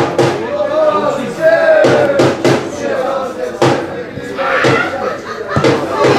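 Football players shouting and calling on the pitch, with several sharp thuds of the ball being kicked.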